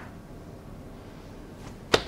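Quiet room tone, then near the end one brief, sharp swish-and-pat as a hand lands on a man's shoulder, cloth on cloth.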